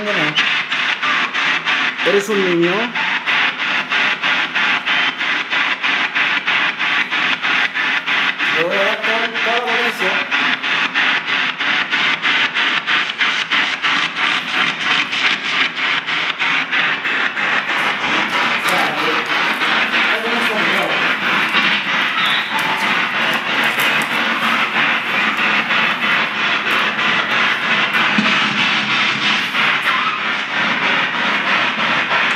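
Hissy, radio-like noise chopped into a fast, even pulse, with brief fragments of voice and guitar music passing through it.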